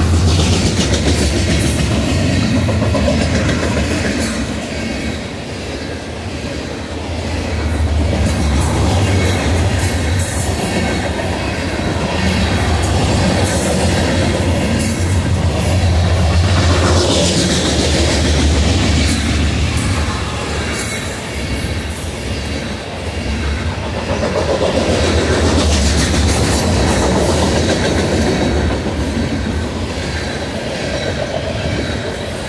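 Loaded covered hopper cars of a freight train rolling past close by: a steady rumble of steel wheels on the rails with the clacking of wheelsets over the rail joints, rising and easing in long waves as the cars go by.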